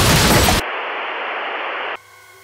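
Tail of an explosion sound effect, a dense blast of noise, that gives way about half a second in to a steady static hiss, which cuts off suddenly near the end.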